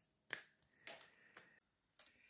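Three faint clicks about half a second apart in near silence, from the cap of an oil-paint tube being worked by hand with a small blade. Dried paint around the cap glues it shut.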